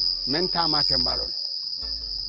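A steady, high-pitched trill that carries on unbroken under a man's brief talk and goes on after he stops, about a second in.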